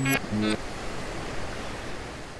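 A brief voiced sound at the very start, then a steady rushing noise, even across high and low pitches, from the intro soundtrack.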